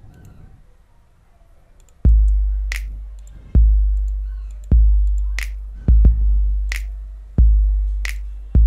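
A drum-machine pattern plays from FL Studio's step sequencer at 90 BPM, starting about two seconds in. It has about six deep 808 kick hits, each with a long booming decay, and three sharp finger-snap sample hits on top.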